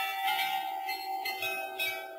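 Bell-like chimes: several notes struck about half a second apart, each ringing on over the others and slowly fading.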